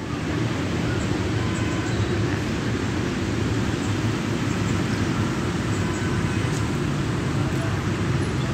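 Steady low rumble of outdoor traffic noise, with wind buffeting the microphone and no single sound standing out.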